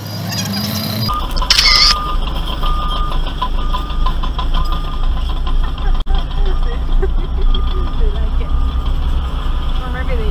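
A Ford Festiva's small engine pulling a trailer at a crawl, heard from inside the cabin as a steady low rumble, with a short burst of noise about a second and a half in. A short beep repeats about once a second throughout.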